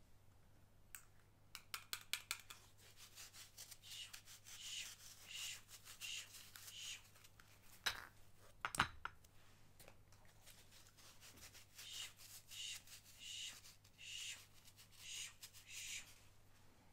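Hands handling perfume bottles and their packaging: light taps and clicks, then two sharp knocks as something is set down. Between them come runs of short scratchy rubs, repeating about every 0.7 s.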